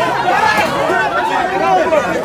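A crowd of people shouting and talking over one another, many voices overlapping.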